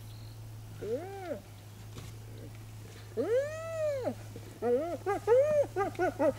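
Spotted hyena calling with rising-and-falling whines: a short one about a second in, a longer one just after three seconds, then a quick run of short giggling notes from about five seconds. The giggle is the call hyenas give when excited or frustrated in a contest over food.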